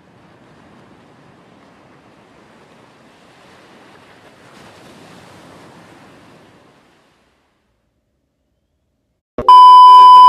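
Faint ocean surf washing on a beach, a soft steady hiss that fades out about seven seconds in. After a short silence, a loud steady television test-tone beep starts near the end, the tone that goes with colour bars.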